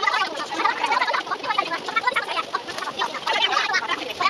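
Chatter of bus passengers' voices sped up fourfold, turned into rapid, high-pitched squeaky babble.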